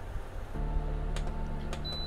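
Ceramic space heater's fan running with a steady hum that comes in about half a second in as its mode is switched. A couple of faint button clicks follow, then a short high beep from the control panel near the end.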